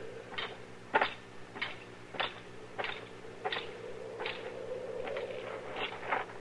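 Radio-drama sound-effect footsteps walking at an even pace, about nine steps, over the steady hum of the old broadcast recording.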